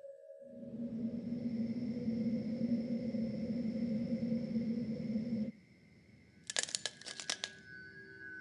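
Horror film score: a dense, low, dark drone swells in and cuts off suddenly about five and a half seconds in. A second later comes a quick burst of sharp clicks or rattles lasting about a second, then thin, sustained eerie tones.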